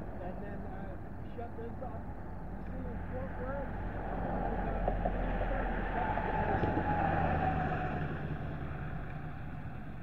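A vehicle engine running with a low steady hum, growing louder about four seconds in and easing off again near the end.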